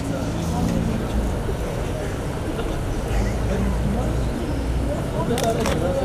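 Street traffic noise: a steady low rumble of car engines, with two sharp clicks near the end.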